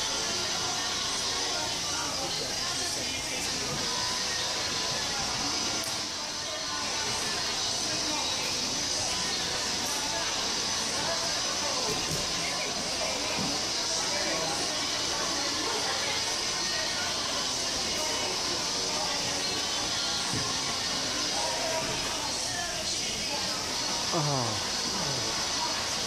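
Background music and indistinct voices of other people, over a steady hiss.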